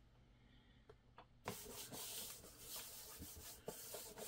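Hands rubbing a sticky-paper decal flat onto a cardboard pizza box lid: a faint rubbing that starts about a second and a half in, after a couple of light ticks.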